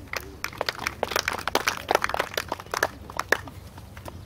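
A small gallery of spectators clapping after a tee shot: scattered individual claps that thicken around the middle and die away about three and a half seconds in.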